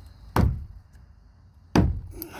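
Two knocks on the wooden boards of a fire-damaged shed, about a second and a half apart.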